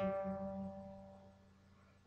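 An acoustic guitar chord strummed once and left to ring, dying away over about a second and a half.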